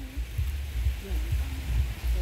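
Low, uneven rumble on the microphone, with a faint voice in the background.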